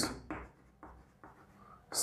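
Chalk writing on a chalkboard: a few short, faint strokes and taps of the chalk as letters are written.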